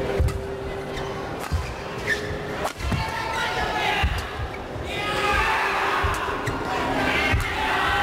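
Badminton rally: sharp racket strikes on the shuttlecock about every second or so, with the players' footfalls on the court, over arena crowd noise that swells into massed chanting and shouting about five seconds in.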